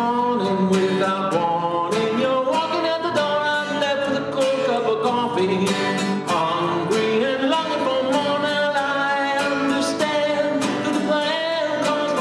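A man singing a solo song to his own strummed acoustic guitar, the strums coming in a steady rhythm under the sung melody.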